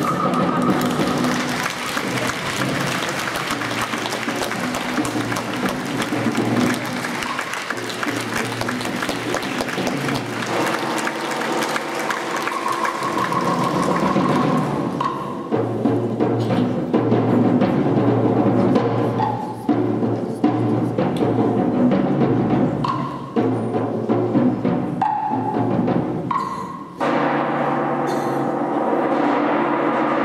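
Contemporary chamber ensemble of clarinet, violin, cello, piano and percussion playing, with heavy drum and percussion strikes. It is loud and dense for about the first half, then turns to sustained string and wind tones with scattered strikes.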